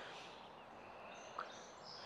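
Faint outdoor background with distant birds chirping, thin and high. One short soft note stands out past the middle.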